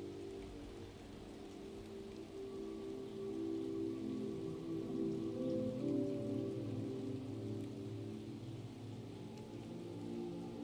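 Soft ambient meditation music of long, held low tones that shift slowly, with a gentle rain sound layered beneath it.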